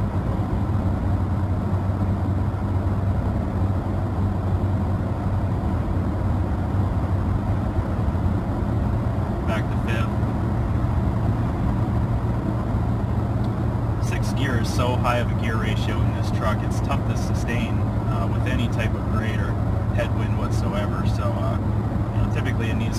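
Steady in-cab drone of a Toyota Tacoma's 3.5-litre V6 with tyre and road noise at highway speed. Partway through, the six-speed automatic drops from sixth to fifth: the gear hunting between fifth and sixth that this truck's stock transmission programming shows at this speed.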